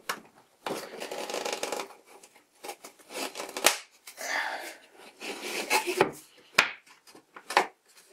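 A thin 3 mm MDF strip scraping and rubbing against a wooden ring as it is pushed into place by hand, in several separate scrapes, with a few sharp clicks and knocks of wood, the last ones near the end.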